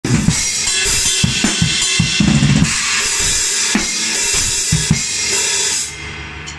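Acoustic drum kit played hard: bass drum and snare strikes under a continuous wash of cymbals. The playing stops abruptly near the end.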